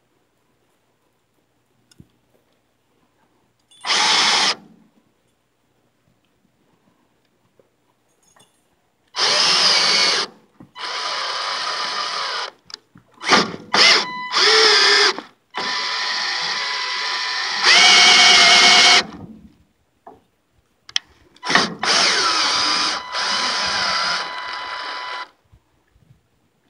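Cordless drill turning the sawmill's blade-height adjustment shaft through a 19 mm socket to raise or lower the saw head. It runs in a string of trigger pulls: one short one about 4 seconds in, then repeated runs of one to a few seconds with brief stops between them.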